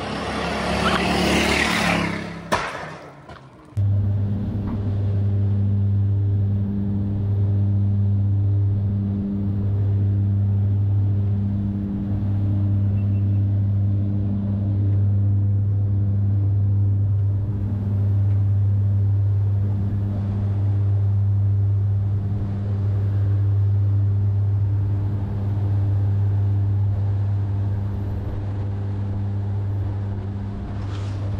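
A car passes loudly for the first few seconds. This cuts sharply to the steady, droning hum of a jump plane's engine and propeller heard from inside the cabin, rising and falling slightly in waves.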